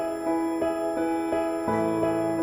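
Gentle new-age keyboard music, soft notes struck about three times a second over held tones, with a lower chord coming in near the end. Faint steady high tones run underneath, the embedded 'healing frequencies' that the music is meant to cover.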